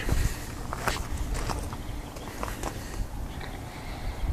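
Footsteps on gravel, a few irregular crunches, over a low steady rumble.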